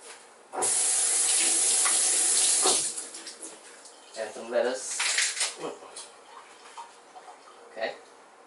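A tap running hard for about two seconds, switching on and off abruptly, with a knock as it stops.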